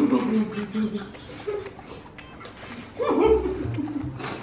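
Laughter in a high, whining voice, once near the start and again about three seconds in, over background music.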